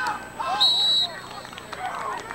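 A referee's whistle blown once, a steady high note about half a second long, blowing the play dead after the ball carrier is tackled. Voices shout around it.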